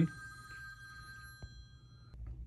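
A high ringing tone made of several steady pitches at once, holding and then fading out near the end, with one faint click partway through.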